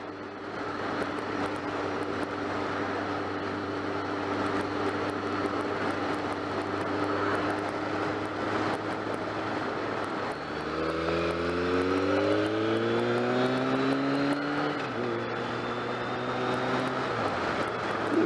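BMW motorcycle engine running under way with wind and road noise. Its note holds steady, then about ten seconds in it dips and climbs for several seconds as the bike accelerates, before dropping back to a steady note near the end.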